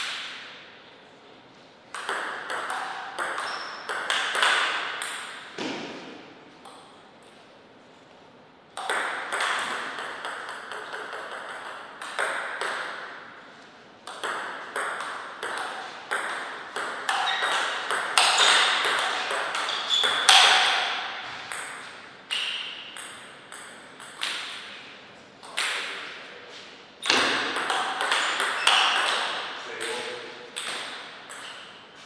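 Table tennis rallies: the ball clicking back and forth between paddles and table in quick runs of hits, each hit trailing off in the hall's echo. There are several rallies, with short pauses between points.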